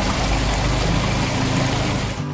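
Small mountain stream running over rocks, a steady rush of water.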